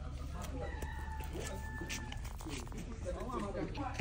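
A drawn-out animal call, one long level note lasting about a second and a half, over a low steady rumble, with faint voices near the end.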